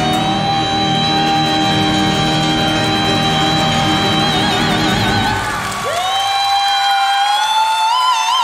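A woman singing long, high held notes in a soprano voice over grand piano: one note sustained for about five seconds, its vibrato widening at the end, then about six seconds in the piano drops out and she slides up to a higher note held alone with strong vibrato.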